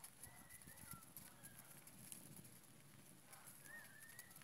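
Near silence outdoors: faint background hush with a few short, high bird chirps, one near the start, one in the middle and a couple near the end.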